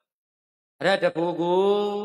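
A Buddhist monk's voice chanting a Pali paritta phrase, starting about a second in after a pause and ending on a long held note.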